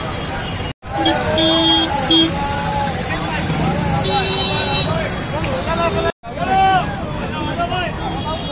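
Crowd chatter in a busy street market, with vehicle horns honking: two short toots a little over a second in and one longer toot about four seconds in. The sound cuts out briefly twice, early on and about six seconds in.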